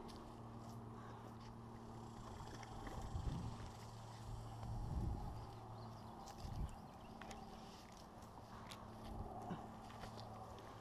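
Footsteps and scuffing on a dry dirt-and-grass riverbank, with a few louder thumps about three, five and six and a half seconds in.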